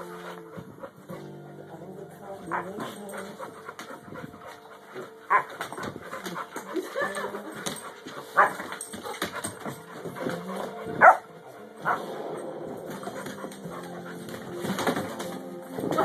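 A puppy's short, sharp barks during rough play, about five of them from a little past five seconds in, the loudest about eleven seconds in, over background music.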